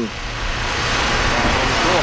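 A rush of noise with no clear tone, swelling gradually over two seconds and cutting off abruptly at the end.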